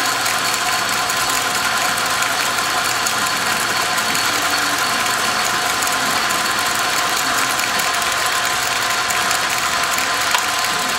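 South Bend 9-inch metal lathe running under its 1/3 HP electric motor: a steady mechanical whirr from the belt drive, spindle and gearing, with a few held whining tones and no change in speed.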